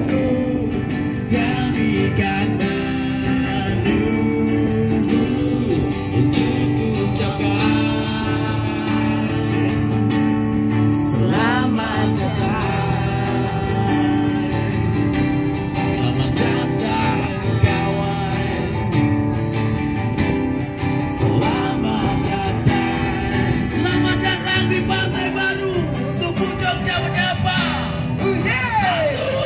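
Acoustic guitar playing a song, with singing heard at times.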